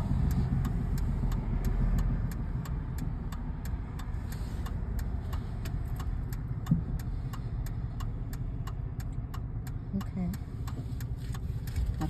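Car engine idling, heard from inside the cabin during a slow parking manoeuvre, with a low rumble that eases after the first couple of seconds. An even ticking of about three to four clicks a second runs throughout, typical of the turn-signal indicator.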